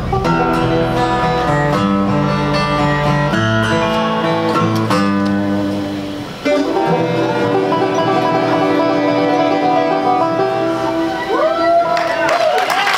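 Acoustic bluegrass band playing an instrumental passage: banjo with acoustic guitar, mandolin, fiddle and upright bass. The music dips briefly about six seconds in, then comes back at full level.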